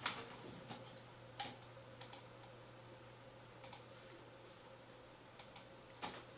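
A handful of faint, sharp clicks at irregular intervals while a mid-2011 iMac is being shut down by hand, over a low steady hum.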